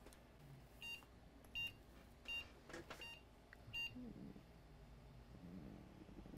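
A small electronic beeper gives five short, high beeps, evenly spaced about three-quarters of a second apart.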